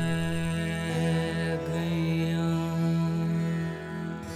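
Harmonium holding a sustained chord, with an acoustic guitar playing along and no tabla: the closing chord of the song.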